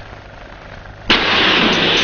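A low steady hum, then about a second in a loud crash as dramatic background music cuts in suddenly and carries on.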